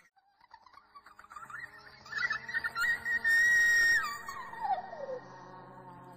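Eerie, frightening-sounding soundtrack: a low held drone with a high whistle-like tone that swells about two seconds in, holds steady, then slides down in pitch near the end.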